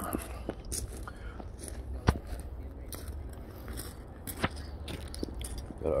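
Handling noise from a hand-held phone: a low steady rumble with scattered clicks and scrapes, the sharpest about two seconds in and again just after four seconds.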